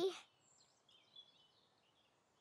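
The tail end of a cartoon character's shout, then faint background birdsong: soft, high chirps and tweets, with one short louder chirp a little past a second in.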